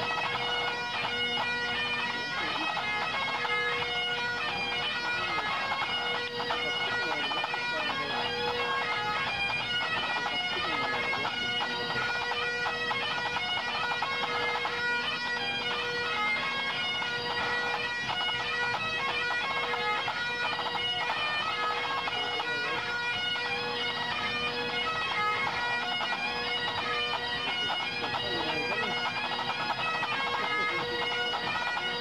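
Pipe band playing: Great Highland bagpipes, their drones sounding under a continuous chanter melody, together with the band's snare, tenor and bass drums.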